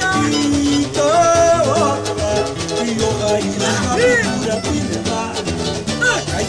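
Samba-enredo, a samba school's theme song: a singer carries the melody over the band's accompaniment.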